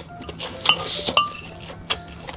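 Utensils clinking and scraping against a ceramic dish as fried rice is scooped: two sharp, briefly ringing clinks about a second in with a scrape between them, and a lighter click near the end.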